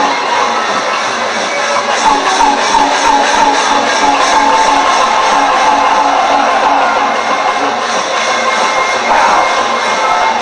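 Traditional Lethwei ring music, a Burmese percussion-and-wind ensemble, playing a steady fast beat with a wavering melody over a cheering arena crowd.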